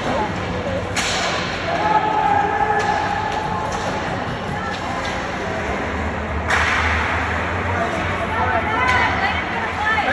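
Ice hockey play sounds: sticks knocking the puck and skate blades scraping the ice, with spectators' voices. There is a sharp crack about a second in, and a louder hit about six and a half seconds in, followed by a second-long scrape.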